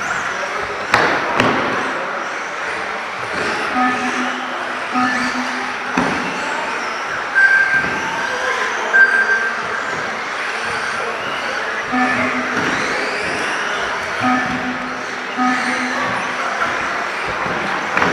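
Electric radio-controlled off-road cars racing round an indoor track, their motors whining up and down in pitch, with sharp knocks as cars land or hit the track and short electronic beeps, all echoing in a large hall.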